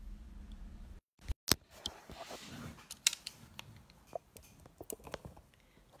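Handling noise of a phone as it is switched to its other camera. The sound cuts out completely for a moment about a second in, followed by a sharp click, then scattered light taps and clicks of fingers on the phone.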